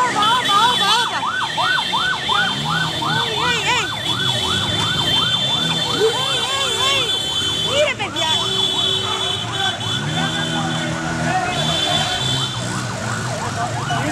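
Police motorcycle siren yelping in fast rising-and-falling sweeps, about three a second, through the first five seconds, then in scattered sweeps. Motorcycle engines and shouting voices sound underneath.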